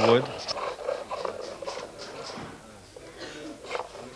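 Chisel scraping a wooden spindle as it is spun back and forth on a hand-bowed lathe, in faint, uneven strokes.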